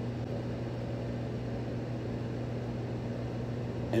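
Steady low background hum with a faint hiss, unchanging throughout, with no other events.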